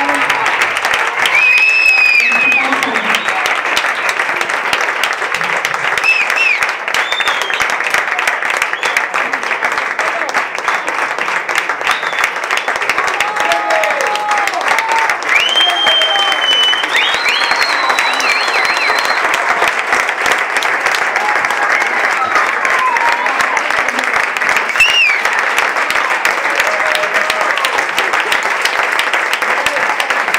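Theatre audience applauding steadily, with scattered whistles and cheers over the clapping.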